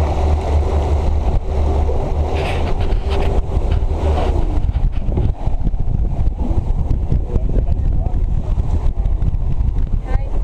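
Wind buffeting the microphone over a boat's low engine rumble and water rushing along the hull as the boat runs through the sea during a fight with a mako shark. The rumble is steady for the first few seconds and turns uneven about halfway through.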